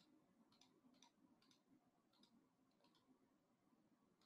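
Near silence: room tone with several faint computer mouse clicks at an uneven pace.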